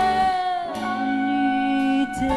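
Live jazz band with piano and a horn section of saxophone, trumpet and trombone, playing slow held chords in a ballad. About two-thirds of a second in, the top note slides down into a new chord, which is held.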